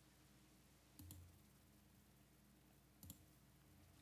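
Near silence with two faint mouse clicks about two seconds apart, made while clicking through the desktop's power menu to reboot.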